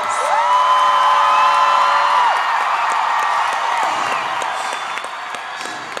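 Arena crowd cheering and screaming, with several long, steady high-pitched screams standing out in the first couple of seconds; the cheering slowly dies down.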